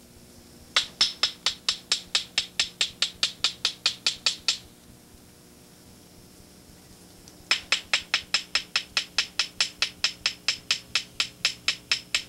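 Hand-held stone tapping rapidly against another stone, about five sharp clicks a second, in two runs of about four seconds each with a pause between: pecking with a hammerstone to shape a stone tool.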